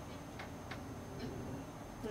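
Low room background with two faint, short clicks about a third of a second apart.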